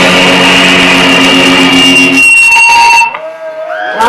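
Electric guitars and amplifier feedback of a grindcore band hold a loud, ringing final chord, with a high steady whine over it, and then cut off sharply about three seconds in. Quieter sliding, bending tones follow.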